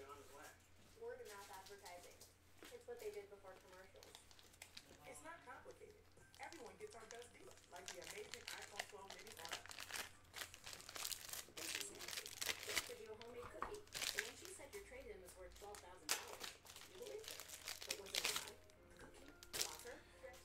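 Plastic packaging crinkling and crackling, with some tearing, as trading cards are handled, thickest through the second half.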